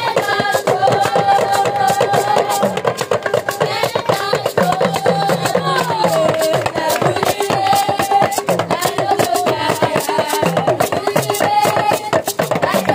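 A group of Yoruba talking drums (dùndún, hourglass pressure drums) played together with curved sticks: a fast, dense, steady drumming rhythm.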